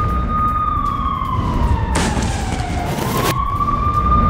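Civil-defence air raid siren wailing a rocket-attack alert: a steady high tone that sags in pitch about halfway through and climbs back near the end, over a low rumble, with a burst of rushing noise as the pitch drops.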